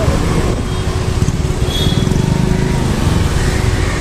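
Riding a motor scooter through town traffic: a steady engine-and-road rumble with street traffic around.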